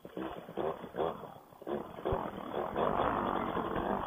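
Paramotor engine and propeller running under takeoff throttle, heard muffled through a helmet intercom microphone, growing louder from about halfway through.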